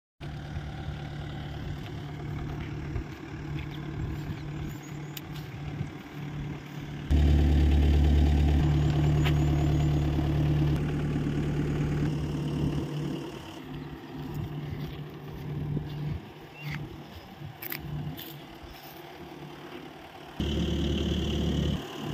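Tata Super Ace pickup's diesel engine idling steadily. It gets louder suddenly about seven seconds in and again near the end.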